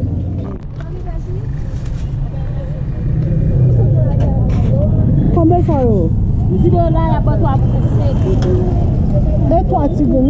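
People talking at an open-air street market over a steady low rumble of vehicle engines, which gets louder about three seconds in.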